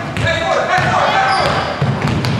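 A basketball bouncing on a wooden gym floor as it is dribbled, under steady shouting and calling voices of players and spectators.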